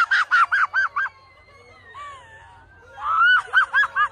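A person's high-pitched cackling laughter in quick bursts of about seven 'ha's a second, once at the start and again near the end, in excitement at winning.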